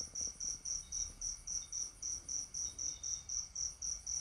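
A cricket chirping steadily in the background, a high-pitched chirp repeated evenly about four times a second.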